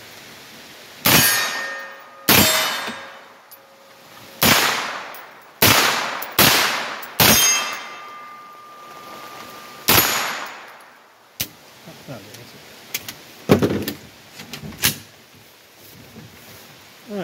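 AR-15 rifle firing seven single shots at irregular intervals from a bipod, each a sharp crack with a fading echo and a ringing tone lingering after some of them. After the last shot come a few lighter clicks and knocks.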